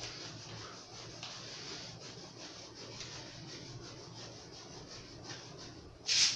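Sharpened knife sawing through a thick foam mattress in quick, evenly repeated back-and-forth strokes, a faint soft rasping.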